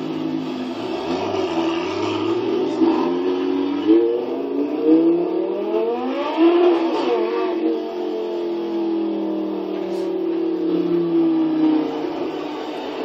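A supercar engine accelerating, its pitch rising over a few seconds to a peak near the middle, then falling slowly as it eases off. There is a single sharp click late on.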